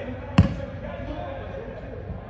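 A soccer ball kicked hard once, a sharp thud about half a second in.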